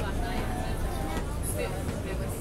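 Subway train running, a steady low rumble heard from inside the car, with other passengers talking in the background.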